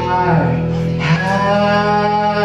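A band playing live: held notes, one bending downward about half a second in, then new sustained notes from about a second in.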